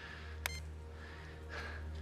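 A mobile phone gives one short, sharp electronic beep about half a second in as a call is ended, over a low steady hum.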